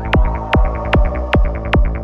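Progressive full-on psytrance with a steady kick drum about two and a half beats a second and a rolling bassline between the kicks, short hi-hat ticks and a held synth tone over it. The beat has just come back in after a build of rising synth sweeps.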